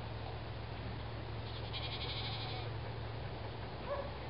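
Goats bleating faintly, a short call near the start and a clearer one just at the end, over a steady low rumble. A brief high trill sounds about halfway through.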